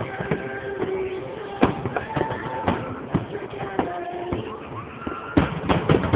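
Aerial fireworks shells bursting with sharp bangs, one loud bang about a second and a half in and a quick run of several near the end, over the chatter of a large crowd.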